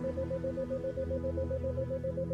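Slow ambient synthesizer pad music, with a tone near 528 Hz pulsing evenly about seven times a second: a 7 Hz isochronic tone layered over the music.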